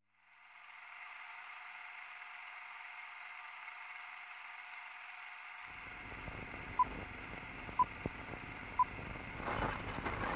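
Hiss of an old archival broadcast recording, narrow and thin like a radio or phone line. About halfway in, crackle and low rumble join it, then three short beeps at one pitch sound about a second apart, and denser crackle follows.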